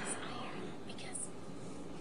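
A faint, hushed voice close to a whisper, over a steady low room hum.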